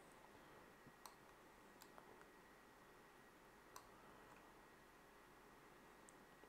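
Near silence: room tone with a handful of faint computer mouse clicks in the first four seconds, the sharpest just under four seconds in.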